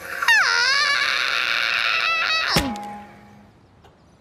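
A cartoon character's yelling cry, its pitch swooping up and then down. About two and a half seconds in there is a thunk as the mobility scooter bumps into a parked car, and then the sound dies away.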